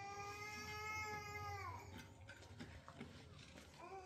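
A cat yowling: one long, drawn-out call, level in pitch and dropping away at its end, then a second call starting just before the end.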